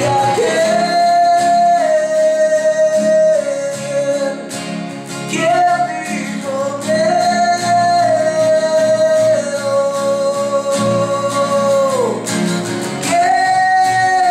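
Rock band playing a song, a voice singing long held notes that slide down at their ends over guitar.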